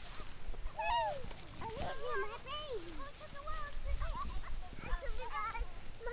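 Children's voices: a string of short wordless calls and babble, quieter than the adult speech around them.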